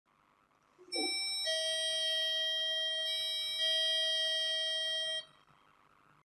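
BT8031-2S melody IC playing its electronic ding-dong doorbell chime through a small speaker: clear electronic tones with a few note changes, ending suddenly about five seconds in. This is the single-play version of the chip, which plays the melody once and then stops.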